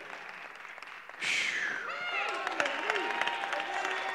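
Congregation starts applauding about a second in, with scattered voices calling out over the clapping.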